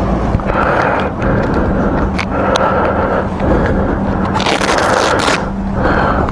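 Gloved hands handling a fabric motorcycle tank bag, with scraping and rustling while items are stowed. A longer rasp of about a second comes near the end, over a steady low hum.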